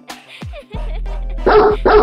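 A dog barking twice in quick succession, about a second and a half in, over music with a steady low bass note.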